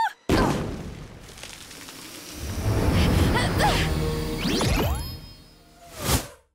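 Cartoon soundtrack of music and sound effects: a sudden hit just after the start that fades over about a second, music swelling again in the middle with gliding tones, and a quick whoosh right at the end.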